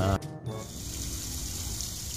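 A steady gush of water pours from a submersible pond pump's outlet pipe and splashes into water below, starting about half a second in.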